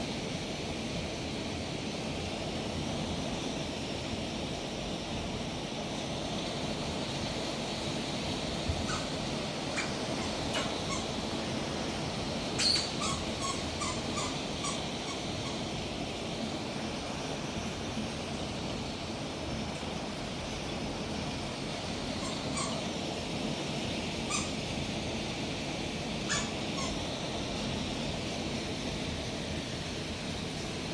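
Hail falling steadily in a heavy hailstorm, an even constant hiss of stones striking the ground and surfaces. A few short sharp sounds cut through it, with a cluster of them near the middle.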